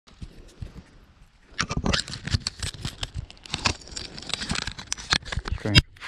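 Close handling noise from an action camera being held and fumbled: irregular knocks, rubs and rustles against its microphone, starting about a second and a half in.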